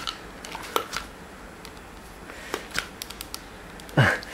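Scattered light clicks and rubbing of hard plastic as a Nerf Ramrod blaster is handled, a few sharp ticks spread over a quiet background.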